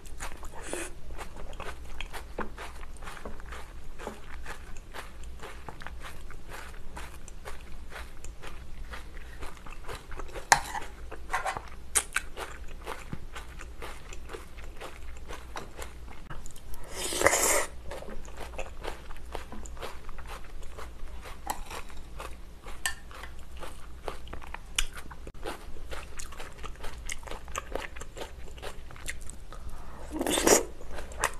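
Close-miked chewing and wet mouth sounds of a person eating creamy rice-cake tteokbokki and noodles: a steady run of small clicks and smacks, with one louder burst about halfway through.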